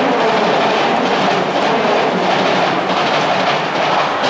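Loud, steady roar from a school brass band cheering section in a domed stadium: a dense wash of sound with no clear notes.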